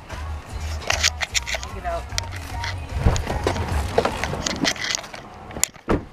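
Close handling noise: irregular clicks, knocks and rustles as a package tied to a mailbox is worked loose by hand, over a low steady rumble.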